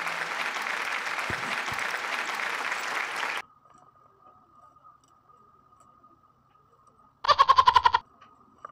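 Microphone handling noise: a steady rushing noise as hands grip and adjust a condenser microphone and its pop filter on a shock mount, cutting off abruptly about three and a half seconds in. A faint steady whine follows, and near the end there is a short burst of loud, rapid rattling knocks.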